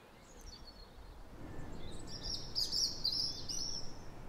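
Outdoor ambience of small birds calling over a low background rumble. Their chirps are faint at first and become a brighter, quick run of high chirps in the second half.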